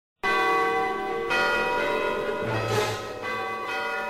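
Bell tones ringing out after a moment of silence, with a fresh strike roughly every second, each one ringing on and overlapping the last.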